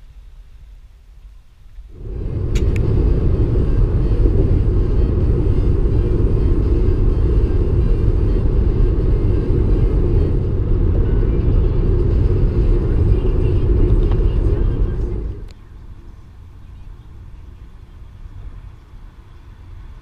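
Steady low road and wind noise inside a car cabin at freeway speed. It starts abruptly about two seconds in and drops away to a much quieter background about fifteen seconds in.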